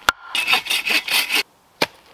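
Wood being sawn by hand: a quick run of rasping saw strokes lasting about a second, with a sharp knock just before it and another near the end.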